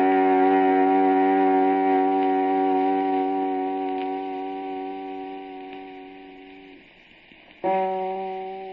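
Organ music: a long sustained chord that slowly fades away, then a new chord comes in sharply near the end.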